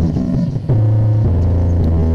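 Loud, bass-heavy music played through a competition stack of small loudspeaker cabinets. Long held low bass notes briefly drop away at the start and come back in about two-thirds of a second in, then step down in pitch a little past halfway.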